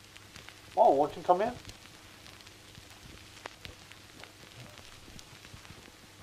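A short spoken phrase about a second in, then a faint hiss with a low hum and scattered small clicks and crackles.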